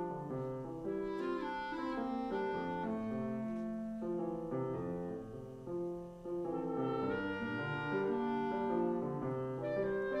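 Live orchestra playing a melodic passage, a clarinet carrying the line over piano; the music thins briefly about six seconds in, then swells again.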